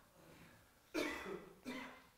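A man coughing twice: one short cough about a second in and a second, shorter one just before the end.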